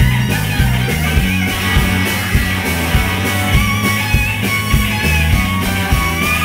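Live rock band playing an instrumental passage: two electric guitars, electric bass and drums. A steady drum beat, a little under two a second, sits under the bass, and a guitar line wavers in pitch on top.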